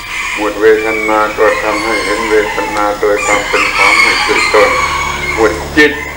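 A rooster crowing and clucking several times, mixed with a man speaking slowly.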